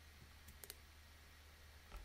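Faint computer mouse clicks, three close together about half a second in, over a steady low hum, with a soft bump near the end.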